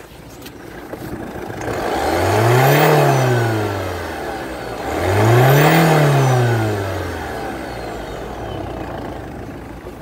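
Car engine revved twice with the bonnet open: each rev climbs smoothly, peaks about three and six seconds in, and falls back to idle.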